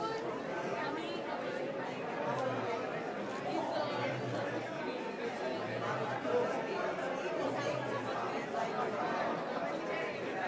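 Indistinct chatter: several people talking at once, with no single voice standing out.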